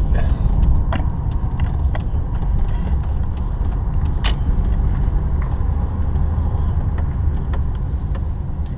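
Car engine and road noise heard from inside the cabin while driving slowly: a steady low rumble, with a few light clicks scattered through it.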